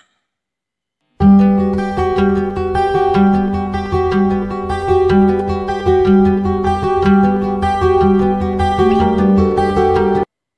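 Instrumental background music with a plucked-string, guitar-like sound, starting about a second in after a moment of silence. It plays a steady repeating pattern and cuts off abruptly at the end.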